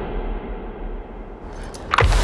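Trailer sound design: a muffled low rumbling drone that slowly fades, then a quick swelling whoosh with a couple of sharp hits near the end.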